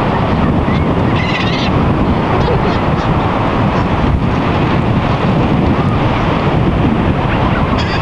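Gulls calling now and then as a flock crowds in, under a loud, steady rush of wind on the microphone.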